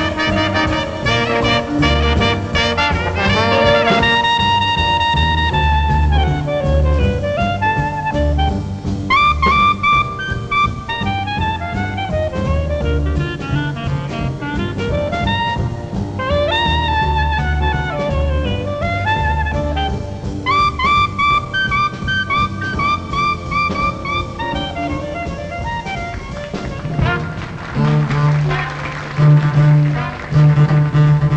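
Traditional New Orleans jazz band playing a slow blues live, with trumpet, trombone and clarinet over piano, double bass and drums. Near the end a bowed double bass comes in with long low notes.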